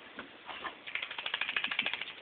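A dog rubbing and rolling himself on a towel, with a quick rhythmic scratching of about ten strokes a second starting about a second in.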